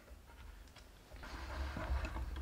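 Hand-worked wooden screw press being turned down onto a print, a soft rubbing, scraping noise that starts about a second in.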